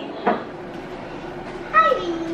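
A glass jar set down on the countertop with a short knock. Near the end comes a short, high-pitched call that drops in pitch as it ends, over a steady low hum.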